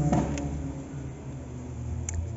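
Low, steady outdoor rumble in a strong wind, with no clear single event.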